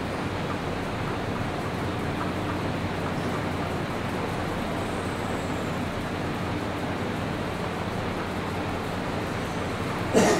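Steady, unchanging background hiss with a faint low hum underneath, at a moderate level throughout.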